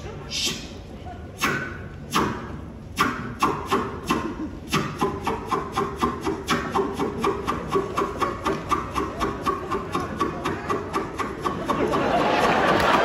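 A crowd clapping in unison: a few separate claps at first, then speeding up into a steady beat of about three to four claps a second, a build-up of suspense.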